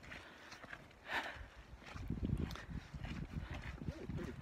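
Footsteps on a dirt trail, irregular and uneven, with low rumble on a handheld microphone.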